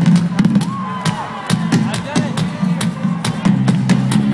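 Live rock band through an arena PA, heard from within the audience: a steady drum beat over a held low bass note, with scattered crowd whoops.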